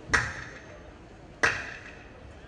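Two sharp hand claps in unison by a group of Thiruvathirakali dancers, about a second and a quarter apart, each with a short ring after it.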